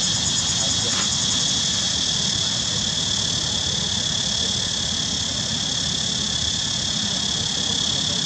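A steady, high-pitched insect chorus that holds at one level, with a low rumble beneath it.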